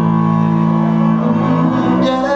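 Live band music in a passage without vocals: sustained low instrumental notes held steady, shifting to a new pitch near the end.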